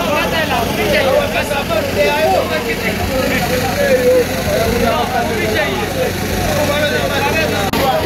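Several people talking at once over a steady engine hum.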